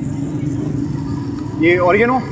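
A steady low mechanical drone, loud and even, fading slightly after a second and a half; a man starts speaking near the end.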